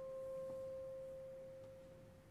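Solo clarinet holding a single soft, pure-toned note that slowly dies away near the end.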